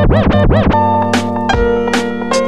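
Lo-fi hip hop instrumental with turntable-style scratching: a sample is pushed back and forth in quick rising-and-falling sweeps, pausing briefly on a held chord before the scratches return near the end.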